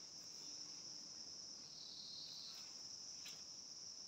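Faint, steady, high-pitched chorus of insects trilling continuously.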